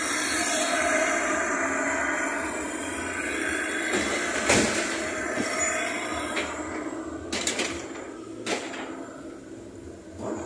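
Road traffic on a busy street: a steady wash of vehicle noise that eases off over the second half, with a few sharp knocks.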